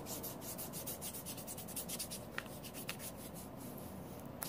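A hand rubbing cream into the skin of a forearm close to the microphone: a quick run of short swishing strokes, several a second, with a couple of sharper ticks about halfway through.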